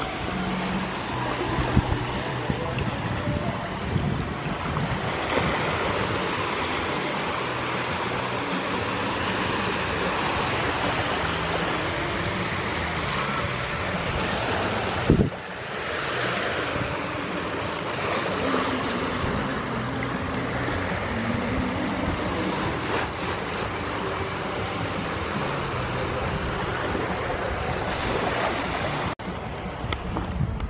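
Small waves washing over the shallows at the water's edge, with wind buffeting the microphone. A single sharp knock about halfway through.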